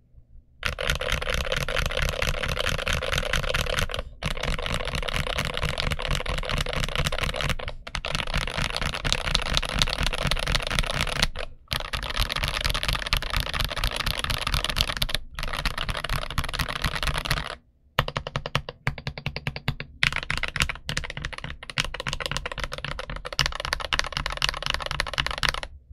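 Fast typing on an FL Esports CMK98 mechanical keyboard with Kailh Box Red linear switches and SA-profile PBT keycaps: a dense run of keystrokes broken by brief pauses about every four seconds. The typing grows more halting near the end.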